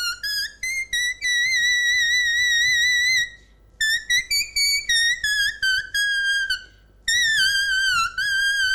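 Background music: a high-pitched solo wind-instrument melody. Runs of quick short notes lead into long held notes with vibrato, in three phrases separated by short breaks.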